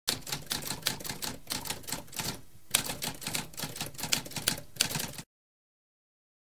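Typewriter keys typing in a fast, uneven run of clacks, with a short pause about two and a half seconds in. The typing stops abruptly a little after five seconds.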